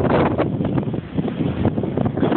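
Wind buffeting the microphone on a sailing boat, a rough, uneven rushing noise that dips briefly about a second in.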